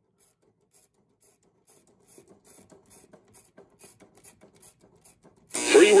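1953 Sentinel tube AM clock radio tuned between stations: faint scratchy crackling in quick ticks, a few a second, growing a little busier after about two seconds. Near the end a station comes in suddenly and loudly, a voice over music.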